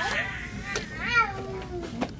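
A high-pitched voice calling out in a drawn-out, gliding exclamation, with a couple of light clicks.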